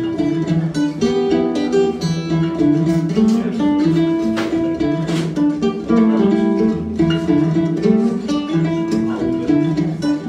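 Acoustic guitar played solo, picked notes and chords in a continuous instrumental passage with no singing.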